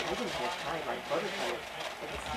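Indistinct talk of people in the background, with a short sharp click at the very start.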